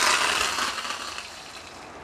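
Fresh curry leaves dropped into hot oil with mustard seeds in a small steel pan, tempering a tadka: a sudden loud spattering sizzle that dies down over about a second to a softer steady sizzle.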